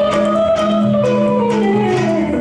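A small string band playing live: an Epiphone semi-hollow electric guitar picks a melody over sustained held notes, with a double bass thumping out low notes beneath.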